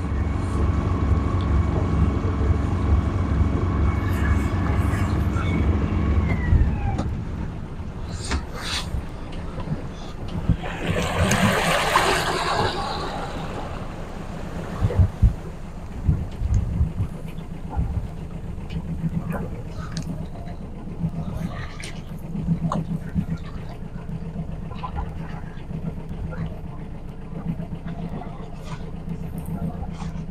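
Sailboat's auxiliary engine running under way: its pitch drops about six seconds in as the revs come down, then it carries on as a lower drone. A brief rushing noise swells around the middle, and a few light knocks follow.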